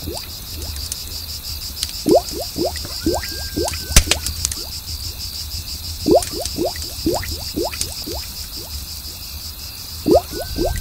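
Bubble sounds in quick runs of five or six plops, each sliding in pitch, recurring every few seconds over a steady, rapidly pulsing cricket chorus. A brief held tone comes about three seconds in and a single sharp click about four seconds in.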